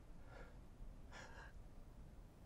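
Near silence broken by two faint breaths, about half a second and just over a second in.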